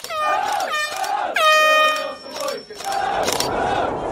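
Football crowd sound effect: three loud air-horn-like blasts in the first two seconds, the third the longest, over crowd noise that carries on alone afterwards.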